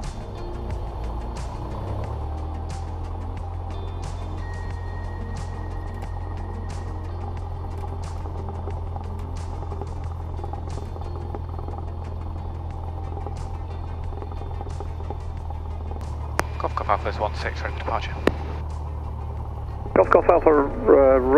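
Cessna 172's piston engine running at low taxi power, a steady low drone, with faint regular clicks a little more than once a second. A brief, garbled radio transmission breaks in near the end.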